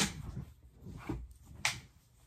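Cloth rustling as a dark piece of fabric is pulled over a person's head, with two short, sharp swishes, one at the start and one near the end.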